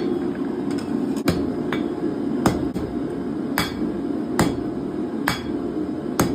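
Cross-peen hammer striking hot steel flat bar on an anvil, about one blow a second, forging out the tip of a leaf.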